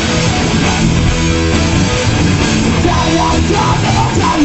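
Live punk rock band playing loud: electric guitars, bass guitar and a drum kit going full tilt.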